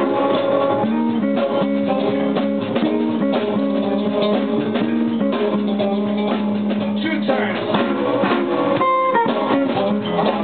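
Live electric blues band: an electric guitar playing a single-note line over a drum kit, with a steady beat and a full band sound.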